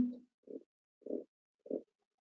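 Three short, soft, low hums from a person's voice, about half a second apart, following the tail end of a spoken word.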